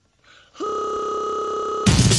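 Breakcore track: after a short gap, a steady buzzy electronic tone, chiptune-like, holds for just over a second, then a loud, fast, dense beat comes in near the end.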